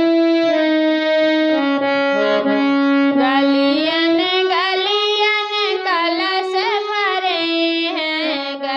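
Harmonium playing a stepwise melody of held reed notes, joined about three seconds in by a woman's singing voice in a Bagheli folk song to Tulsi, with the harmonium accompanying.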